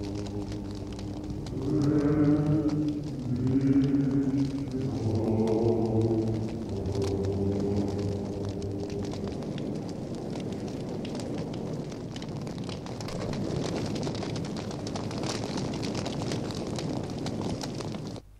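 Low held chords of music, several sustained notes overlapping, over the crackle of a fire. After about seven seconds the chords fade and a steady crackling, rushing fire noise remains.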